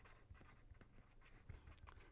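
Faint scratching of a pen writing on paper, in short separate strokes.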